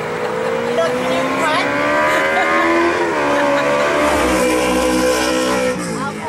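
A motor vehicle accelerating, its engine pitch rising steadily, with a gear change about halfway through; the sound then runs on and cuts off suddenly near the end.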